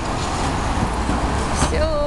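Street traffic passing at a city junction: a low-floor electric tram rolling by together with a car driving past, a steady low rumble with road noise.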